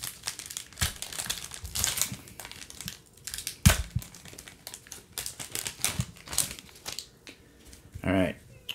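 Foil trading-card pack wrapper crinkling and tearing as it is peeled open by hand, in irregular crackles with one sharper, louder crackle a little over halfway through.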